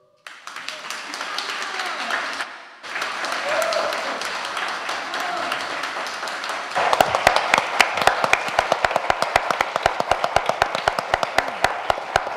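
Theatre audience applauding and cheering as an a cappella song ends. About seven seconds in, the clapping falls into a quick rhythmic clap in unison, about five claps a second.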